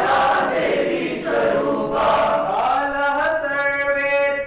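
A roomful of voices singing a song together in unison, with long held notes that step up and down in pitch.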